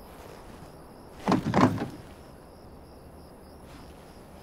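A glass entrance door rattling and knocking in its frame as it is pulled by its handle: a short clatter of under a second, about a second in.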